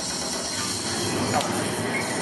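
Indistinct chatter of a crowd of spectators in a hall.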